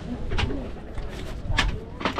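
A bird calling over the murmur of people talking nearby.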